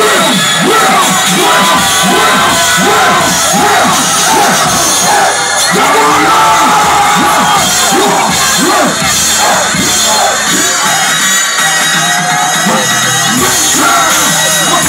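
Live rap music played loud through a concert sound system, with a crowd cheering and shouting along.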